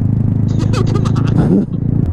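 Honda Grom minibikes' small single-cylinder engines idling with a steady low hum while the riders wait in traffic. A laugh and a sigh are heard over it.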